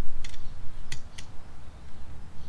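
Three short, sharp clicks over a low steady rumble.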